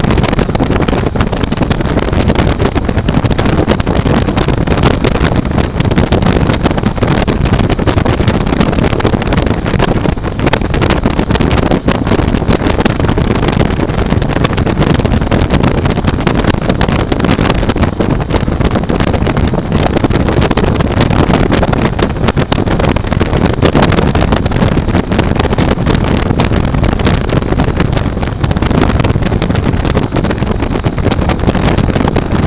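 Motorcycle cruising steadily at about 87 km/h: a loud, unbroken rush of wind on the microphone mixed with engine and road noise.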